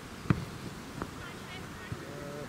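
A football kicked on a grass field: one sharp thud about a third of a second in and a softer one about a second in, with distant voices and faint birds chirping.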